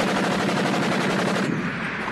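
Mounted machine gun firing a long, rapid burst that cuts in suddenly; about a second and a half in, the sharp crackle dulls to a lower rumble.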